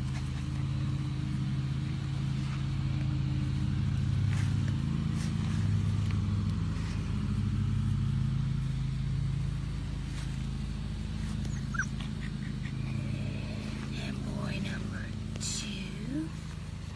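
A steady low engine hum, with a few short high puppy squeaks in the second half.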